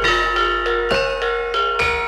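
Javanese gamelan playing: struck bronze metallophones ring out a melody of sharp notes about two a second. A low stroke sounds roughly once a second underneath.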